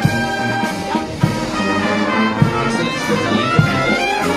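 Military marching band playing a march: brass, including sousaphones, carrying the tune and bass line over the beat of a drum.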